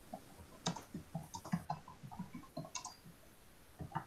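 Typing on a computer keyboard: short, irregular key clicks, about four a second, with a brief pause near the end.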